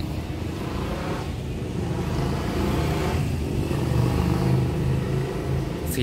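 Engine rumble of a motor vehicle on a nearby road, picked up by a phone's microphone. It grows louder from about two seconds in and eases slightly near the end.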